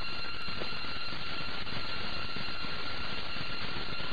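Steady, muffled rumbling noise with a faint high steady whine running through it. It is the narrow-band, low-fidelity soundtrack of archival film of the Soviet Tsar Bomba hydrogen-bomb test.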